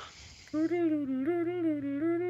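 A man humming a short tune, a few notes swinging up and down, starting about half a second in.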